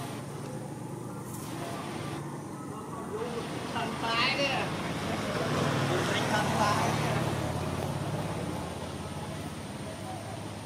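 A motor vehicle passing, its low sound swelling from about five seconds in and fading near the end, over a steady background hum. A brief high call sounds just before the swell.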